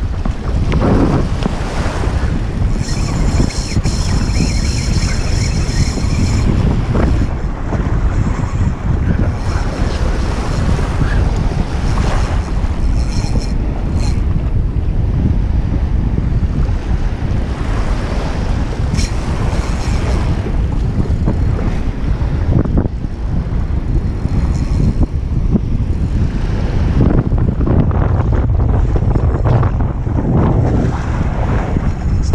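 Wind buffeting the microphone over small waves washing in shallow surf. A high, steady whirr joins in for a few seconds about three seconds in and again briefly around thirteen seconds.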